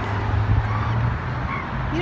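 A passing motor vehicle's engine, a steady low hum over road noise, with the hum shifting slightly about a second in.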